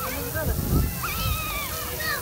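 Young children's high voices calling out and squealing, including one long high squeal about a second in, over the steady hiss of splash-pad fountain jets. A brief low rumble comes about halfway through.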